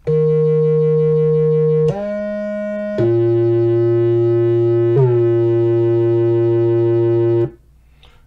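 FXpansion DCAM Synth Squad Cypher software synthesizer playing its 'BA DynAcid' bass preset: four loud sustained bass notes, the second shorter and quieter, the last two on the same pitch. The notes cut off abruptly about half a second before the end.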